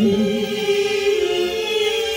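Live jazz-orchestra accompaniment between sung phrases: the orchestra holds sustained chords, strings to the fore, and the harmony shifts about halfway through.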